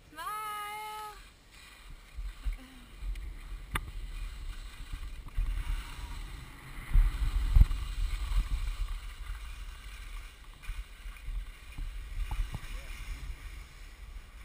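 Wind rumbling on the camera microphone and skis sliding over packed snow during a downhill run, loudest about halfway through.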